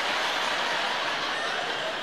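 Audience laughing after a punchline, a steady wash of crowd noise.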